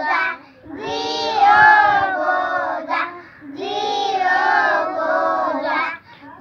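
A group of young children singing a song together in unison, in two long phrases with a short break between them.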